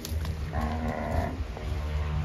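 Brahman-cross cattle: one short, fairly high moo about half a second in, lasting under a second.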